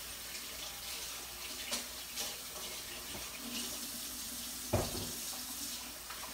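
Kitchen faucet running while hands are washed under it, a steady rush of water with a few light knocks, the clearest one near the end.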